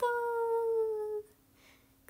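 A young woman's voice holding one long drawn-out vowel, the stretched middle syllable of 'arigatou', its pitch sinking slightly for just over a second before it stops.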